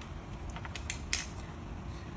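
A few light, sharp clicks, about four in quick succession in the middle, over a low steady background hum.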